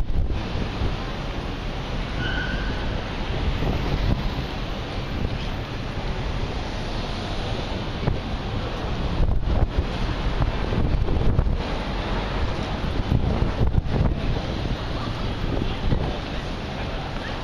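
Wind buffeting the microphone over the steady din of a busy pedestrian street, a constant rushing noise heavy in the low end that thins briefly a few times in the second half.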